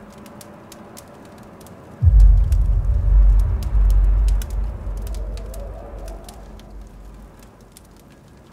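Birds cooing like doves over a faint crackle, broken about two seconds in by a sudden deep rumble, the loudest thing here, which fades away over the next few seconds.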